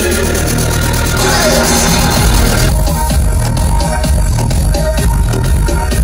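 Electronic dance music with heavy bass played loud through a car audio system with subwoofers, heard inside the car. About three seconds in, the upper sounds drop away, leaving a pulsing bass-driven beat.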